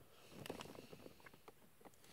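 Faint clicks and light taps of small plastic model-kit parts being handled and pressed together by hand, bunched around half a second in.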